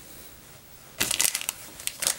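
Brief crinkly crackling from hands working synthetic dubbing and thread at a fly-tying vise: a quick run of small crackles starting about a second in, and a shorter one just before the end.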